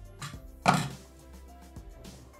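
The plastic lid of a Bimby (Thermomix) food processor pressed shut on its mixing bowl: a light click, then one short thunk about two-thirds of a second in, over quiet background music.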